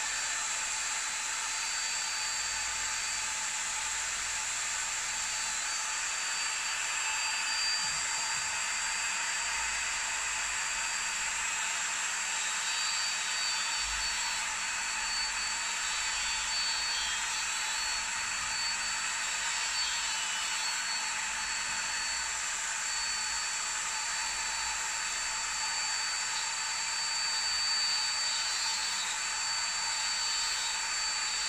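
Dremel rotary tool running at a steady high-pitched whine, with a small grinding stone grinding a fountain-pen nib held against it to shape the tip.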